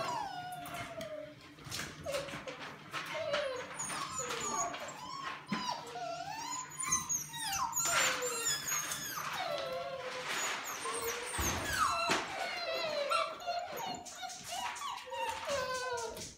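A litter of golden retriever puppies whining and whimpering, many short high cries overlapping and mostly falling in pitch, continuing throughout.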